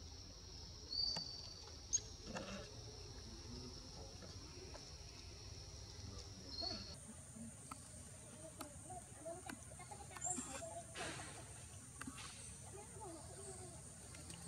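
Insects droning steadily at a high pitch, the drone jumping higher about seven seconds in, with a few faint clicks and soft scuffling sounds close by.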